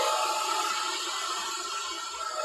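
Handheld hair dryer blowing on its cool setting, a steady whir that slowly grows quieter.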